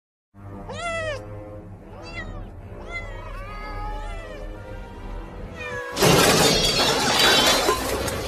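A cat meowing several times over low, steady music, then a sudden loud crash of shattering and clattering about six seconds in.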